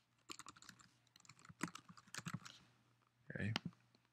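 Faint typing on a computer keyboard: a quick run of keystrokes lasting about two seconds, then a pause.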